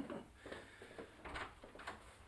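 Faint footsteps across a small room, a few soft knocks about a second in and near the end, as a man walks up to a door.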